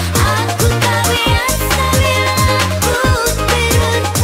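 House music remix playing: a steady four-on-the-floor kick drum about two beats a second under a pulsing bass line, crisp percussion and a gliding lead melody.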